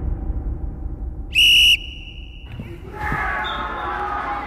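One short, loud blast of a referee's whistle, signalling the start of play. Faint voices and hall ambience follow near the end.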